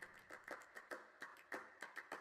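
Faint, regular ticking percussion in background music, about four to five ticks a second.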